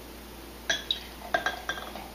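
Neck of a glass soda bottle clinking several times against the rim of a drinking glass as root beer is poured into it, the clinks short and ringing, starting about two-thirds of a second in.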